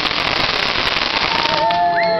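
Aerial consumer firework crackling: a dense, steady rain of tiny pops from its burst, with no gaps. Near the end a steady pitched tone, and one that rises, sound over the crackle.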